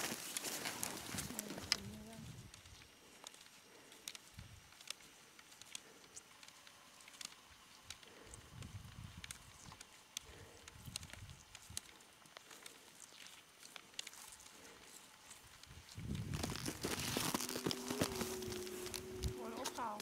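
Mostly quiet outdoor sound with faint, distant voices and small scattered crunches and clicks, like snowshoes treading on snow. Voices grow louder and nearer for the last few seconds.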